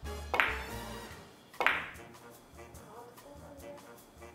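Two sharp clicks of billiard balls during a three-cushion shot, about a second and a quarter apart, each ringing briefly. They sound over background music with steady low notes.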